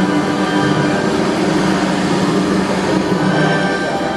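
Background music with long held tones and no clear beat.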